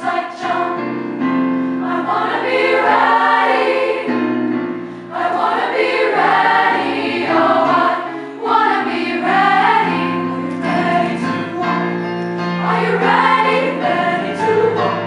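Youth choir singing a gospel-style spiritual in full voice with piano accompaniment, the phrases broken by brief dips about 5 and 8.5 seconds in.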